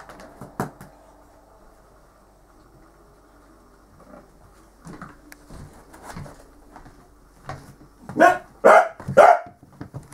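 A dog barking three times in quick succession, about half a second apart, near the end. Before that there are only a few faint knocks.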